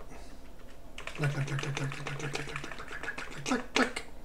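Computer keyboard keys tapped in a fast, even run of clicks from about a second in, deleting text in a terminal editor, then two louder keystrokes near the end.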